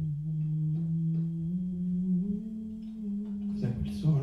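A voice humming one long low note that steps up to a higher held note about two seconds in, with a short breathy rustle near the end.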